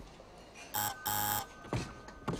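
Electric doorbell buzzer rung twice: a short buzz just under a second in, then a longer buzz of about half a second.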